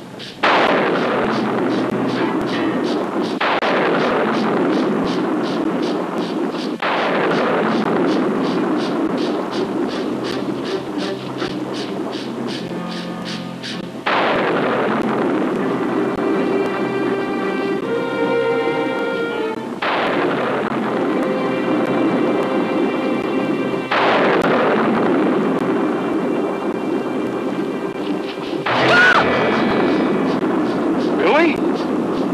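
About seven loud booms a few seconds apart, each dying away slowly, over dramatic film-score music with held notes.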